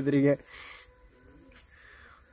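A person's voice for the first moment. After it, faint, light clinks and rustles, like small metal objects being handled.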